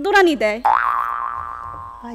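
A springy comic sound-effect tone cutting in about half a second in, right after a short spoken phrase: a sudden twang that bends up briefly and then fades away over more than a second.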